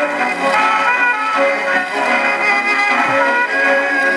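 A wind-up gramophone playing a record: steady instrumental music, thin and without bass.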